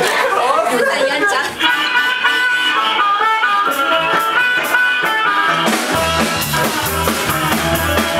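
A live blues band: after a moment of voices, a harmonica plays held, wailing notes over guitar, and a little before the end the drums and bass come in with a heavy beat.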